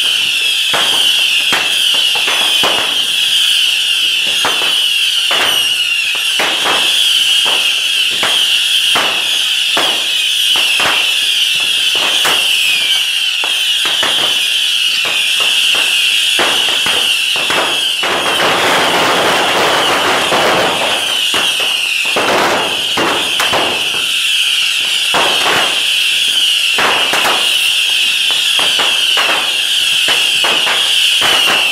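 A barrage of bottle rockets from a beehive fireworks rack: a steady high shriek under a rapid, uneven string of cracks and bangs, with a thicker rush of noise about 18 to 21 seconds in.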